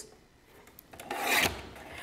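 Cardstock scraping on a paper trimmer: one short rasp about a second in.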